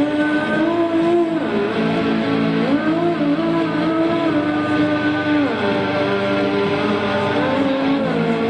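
A woman singing long held notes that glide up and down between pitches, over a steady electric guitar accompaniment.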